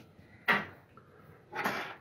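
Handling noise of a small tool on a workbench: a sharp knock about half a second in, then a short scraping rustle near the end.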